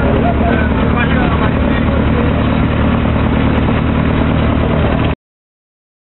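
Jeep engine running at a steady low drone, cut off abruptly about five seconds in.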